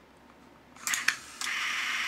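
Two sharp mechanical clicks about a second in, then the small electric motor of the robot's cam sequencer starts and runs with a steady whir.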